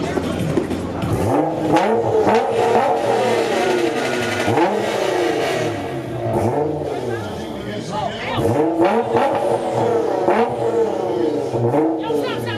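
Nissan GT-R's twin-turbo V6 being revved while parked, in a series of short throttle blips about a second apart, each rising and falling in pitch, with a brief lull partway through.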